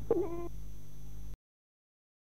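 Steady hum and hiss of an old recording after the music stops. A short pitched call that falls in pitch comes right at the start, and then the sound cuts off suddenly to dead silence a little over a second in.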